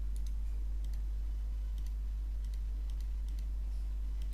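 Computer mouse clicking: a quick cluster of clicks at the start, then single clicks scattered through, over a steady low electrical hum.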